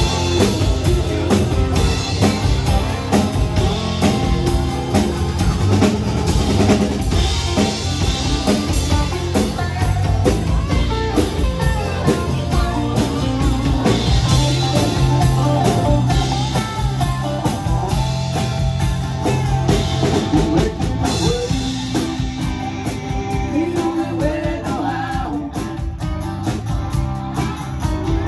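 Live country band playing, with electric guitar, acoustic guitar and a drum kit keeping a steady beat. The music thins out and gets a little quieter about three-quarters of the way through.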